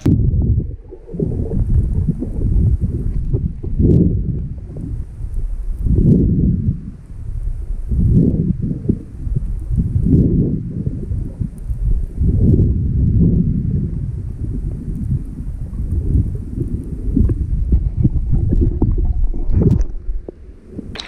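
Underwater sound on a mask-mounted GoPro while a snorkeler swims through a submerged rock tunnel: a muffled low rumbling of moving water that swells and eases irregularly every second or two.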